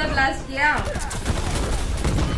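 Rapid gunfire from a film's action-scene soundtrack, with a shouted voice over it in the first second.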